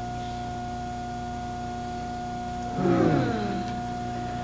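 Steady electrical hum with a thin high whine on the recording. About three seconds in, a short voice sound falls in pitch for about half a second.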